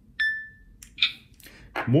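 Hitachi Vulcan handheld LIBS alloy analyzer giving a single short electronic beep, a high tone that fades over about half a second, as it shows its alloy identification result. A brief noise follows about a second later.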